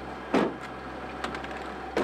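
A van door being shut, closing with one short thump about a third of a second in, followed by a few faint clicks.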